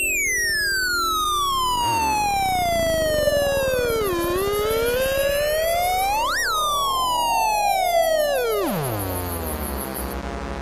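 Electronic synthesizer tone sweeping in pitch. It falls slowly to a low point, climbs to a sharp peak about six seconds in, then drops steeply to a low rumble near the end.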